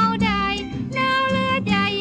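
Female vocalist singing a slow Thai popular song over band accompaniment, with gliding notes and a long held note about halfway through.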